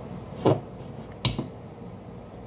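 Hands handling an aluminium beer can: a dull knock about half a second in, then a single sharp click a bit past a second in as fingers work the can's ring-pull.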